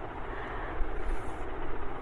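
Steady background noise with no distinct event: an even, low hiss and rumble of room noise.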